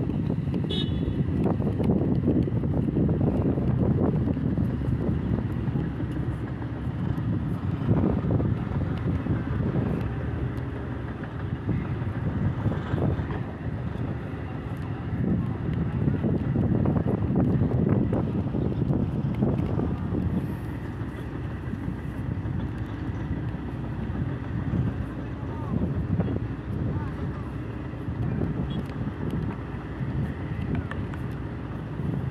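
Crawler crane's diesel engine running as it hoists a precast concrete bridge girder, with wind gusting on the microphone and indistinct voices.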